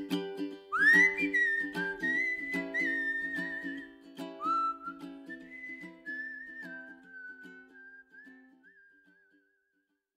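End-credits music: a whistled melody over a plucked-string accompaniment, gradually fading out and gone shortly before the end.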